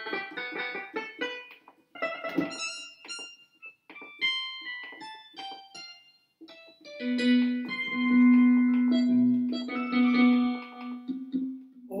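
Digital keyboard played in short phrases of notes, stopping and restarting as different built-in voices are tried out. From about seven seconds in, a low note is held under the higher notes.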